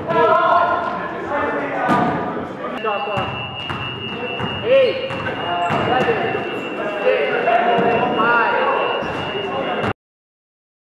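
Live sound of an indoor basketball game: players calling out and the ball bouncing on the hardwood court, with sharp knocks throughout. A steady high-pitched tone joins about three seconds in, and everything cuts off suddenly just before the end.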